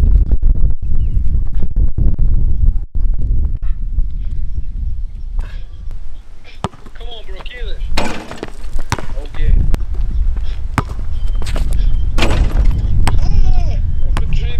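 Basketball being dribbled and dunked on an outdoor court: sharp impacts of the ball on asphalt and a rim and backboard hit about eight seconds in, with wind rumbling on the microphone and shouted exclamations around the dunk.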